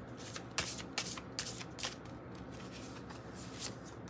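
A deck of oracle cards being shuffled and handled. Card edges flick and slide, making several short soft clicks, most of them in the first two seconds.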